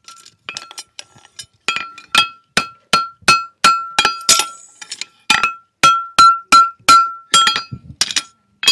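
Farrier's hammer striking a steel horseshoe on a Future 3 anvil: a few light taps, then from about two seconds in a fast run of heavy ringing blows, about three a second.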